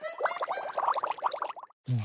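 Cartoon scurrying sound effect: a fast run of short rising blips, about nine a second, which cuts off suddenly about a second and a half in.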